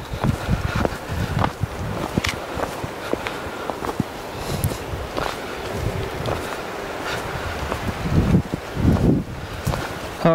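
Footsteps crunching over dry leaves, twigs and loose rock, with irregular crackles of brush underfoot and a few heavier low thumps near the end.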